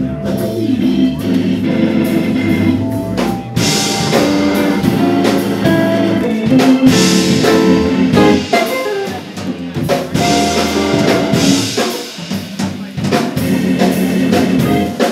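Live jazz combo playing a ballad, led by a Hammond organ with a drum kit keeping time on cymbals, and guitar and vibraphone in the band.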